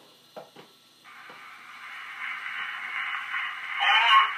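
A wind-up cylinder phonograph being set going: a couple of sharp clicks about half a second in, then the cylinder's surface hiss playing through the horn, growing steadily louder as the lead-in groove runs toward the recording.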